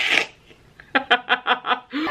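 A woman laughing: a short breathy burst at the start, then, about a second in, a quick run of about six short laughs.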